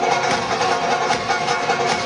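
Banjo picked in fast, even rolls over steady ringing notes.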